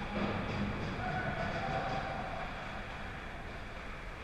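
Ice hockey game on the rink: a steady wash of skating and arena noise, with a faint held tone about a second in.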